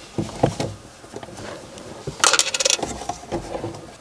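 Plastic instrument cluster knocking and rattling against the dashboard as it is pulled out by hand: a few short knocks, then a quick flurry of clicks and rattles about two seconds in.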